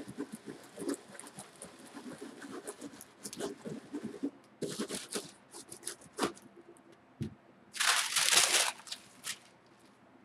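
A baren rubbed over parchment paper on an inked linoleum block: hand-burnishing a print proof, heard as a dry, irregular scratchy scrubbing. About eight seconds in there is a louder rustle of paper being handled and lifted off the block.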